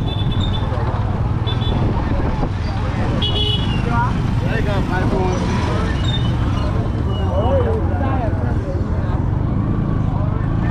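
Street traffic: a steady low rumble of motorbikes and cars, with a few short high-pitched beeps in the first few seconds and people's voices talking in the middle.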